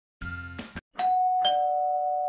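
Two-note 'ding-dong' doorbell chime sound effect: a higher note struck, then a lower one about half a second later, both held and then cut off sharply. It follows a brief snatch of music.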